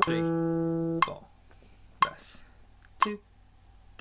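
A single guitar note, E on the fourth string's second fret, rings for about a second and then is stopped. Short sharp clicks follow about once a second, on the beat.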